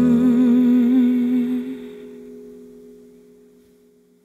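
A female voice holds the song's last wordless note with vibrato over the final ringing chord of two acoustic guitars. The voice stops about two seconds in and the guitar chord rings on, fading to near silence.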